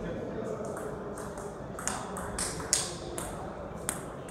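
Table tennis ball clicking sharply against the rubber-faced bats and the table as a point is played: a quick run of about six clicks starting about two seconds in, the loudest near the end.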